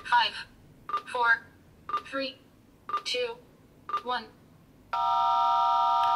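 F3K contest-timing app on a smartphone counting down the last seconds of test time. Once a second, five times, a short beep is followed by a voice calling the number. About five seconds in, a long, steady electronic horn of several pitches sounds, marking the start of the working window.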